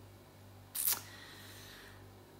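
A woman's short, sharp breath in between sentences, about a second in, over a faint steady low hum.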